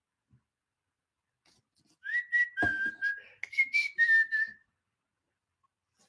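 A man whistling in amazement: a short phrase of a few held notes that step down, up and down again, lasting about two and a half seconds and starting about two seconds in.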